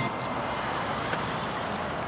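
Steady city street traffic noise.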